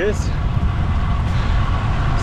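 Wind buffeting the microphone of an action camera on a moving road bike: a steady low rumble mixed with road and tyre noise.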